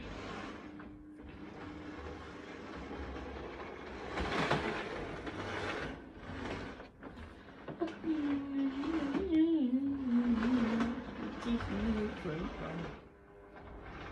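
Small electric motor of a Hornby model locomotive whirring as it is powered on the track, a steady whirr that dies away near the end; the locomotive has not been run for a couple of years. A wavering hum sounds over it for a few seconds in the second half.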